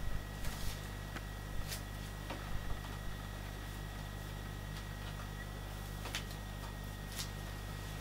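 Steady low electrical hum, with a few faint clicks and rustles from card and double-sided tape being handled on a table, mostly in the first three seconds.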